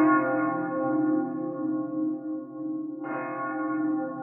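Korg Wavestate synthesizer playing a bell-like patch: a bright chord rings and slowly fades, then is struck again about three seconds in, over a steady low sustained drone.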